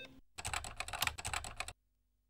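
Computer keyboard keys typed in a quick run of clicks lasting about a second and a half, then stopping abruptly.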